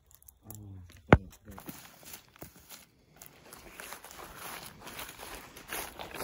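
Footsteps rustling and crunching through dry leaf litter and brush, steady through the second half. Near the start, a brief voice and a single loud, sharp click.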